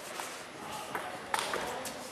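A few sharp slaps of bare feet and hands on training mats and jackets as aikido partners move and engage in open-hand randori, the loudest about a second and a half in.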